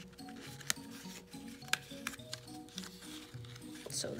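Quiet background music: a repeating pattern of short low notes over a steady held tone, with a couple of faint clicks.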